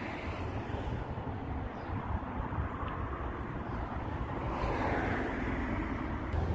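Outdoor road-traffic noise: a steady rumble that swells about four and a half seconds in, as a vehicle passes.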